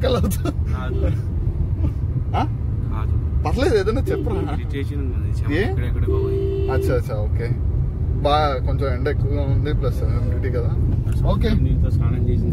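Steady low rumble of a car in motion heard from inside the cabin, with men's voices talking over it. A brief steady tone sounds for about a second midway.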